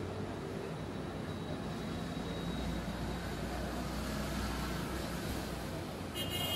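A low, steady rumble of distant engine noise. It swells about halfway through and eases off again near the end.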